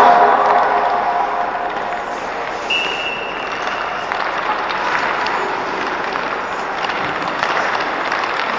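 Hockey skates scraping and carving the ice, with scattered sharp clacks of sticks and pucks, echoing in a large indoor rink. A louder burst at the very start fades over about a second, and a thin high tone sounds briefly about three seconds in.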